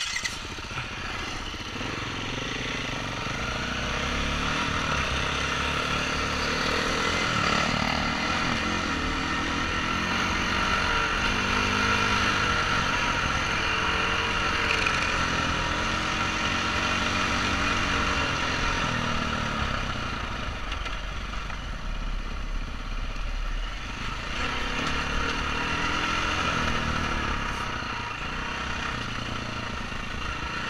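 2016 KTM 350 EXC-F's single-cylinder four-stroke engine being ridden on a dirt trail. Its revs rise and fall again and again as the rider works the throttle.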